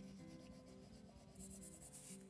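Faint scratching of a Prismacolor colored pencil stroking over paper, growing a little near the end, over quiet background music with held notes.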